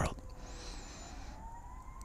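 A faint, distant siren wailing, its pitch rising slowly and then levelling off.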